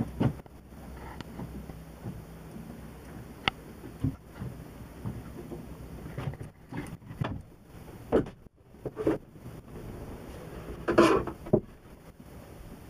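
Irregular knocks, clunks and rustling of people moving about and handling things in a small boat cabin, with a louder cluster of bumps near the end.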